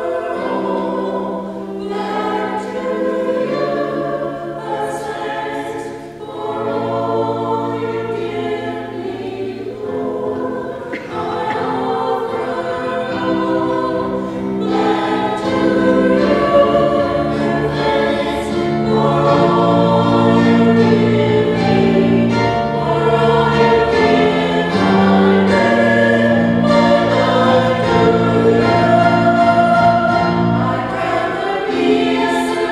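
Voices singing together in a slow church hymn or anthem, in held chords that move from note to note every second or two, getting somewhat louder in the second half.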